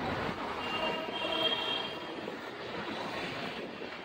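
Street traffic noise, with a thin high-pitched squeal from about half a second to two seconds in.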